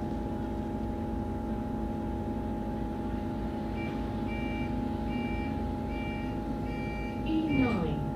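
London bus door warning beeps: a high beep repeated about six times, roughly one and a half a second, starting about halfway through, over the bus's steady running hum with a constant whine. Near the end a short sound falls in pitch.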